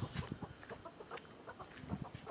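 Domestic chickens clucking faintly, a few short scattered clucks.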